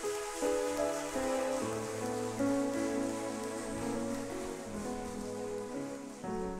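A congregation applauding with sustained clapping, which thins out toward the end, over music of slow held chords.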